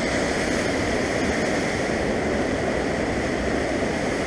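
Fast mountain river rushing steadily: a constant, even wash of turbulent water in flood.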